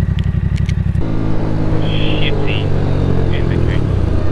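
Motorcycle engine idling with a fast, even pulse, which about a second in changes abruptly to the steady drone of the bike under way at a constant speed.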